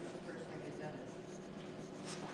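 Pencil strokes scratching on drawing paper as a portrait is shaded, with faint voices in the background.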